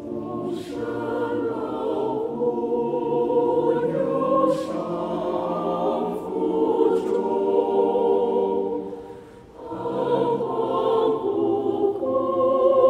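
Choir singing a Chinese hymn in several-part harmony. The singing pauses briefly between phrases about nine and a half seconds in, then comes back in.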